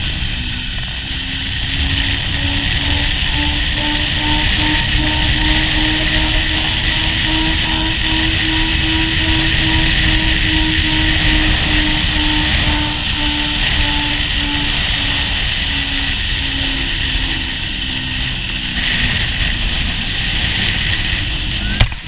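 Zip-line trolley rolling along the steel cable, its pulleys giving a steady whine that rises slowly in pitch and then falls again as the ride slows, under heavy wind rush on the microphone.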